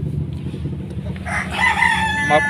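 A rooster crowing: one long held call starting just over a second in, over a steady low hum.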